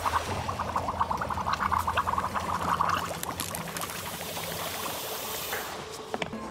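Liquid bubbling and gurgling in a drinking glass, a rapid run of small pops for the first few seconds, then thinning into a fainter fizzing hiss.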